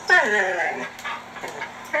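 A husky's drawn-out whining howl that slides down in pitch over about half a second and trails off, with a second wavering howl starting near the end.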